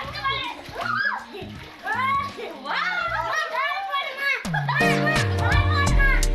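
Children shouting and squealing as they play in a paddling pool. Music with a deep bass line comes in about four and a half seconds in.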